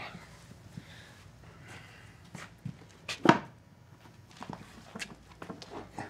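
A horse's hoof being lifted and set on a farrier's hoof stand: soft shuffling with a few brief knocks, the sharpest about halfway through.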